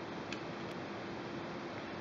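Faint ticks of a precision Phillips screwdriver backing a small screw out of a fly reel's metal adapter foot, over a steady low hiss. One small click comes about a third of a second in.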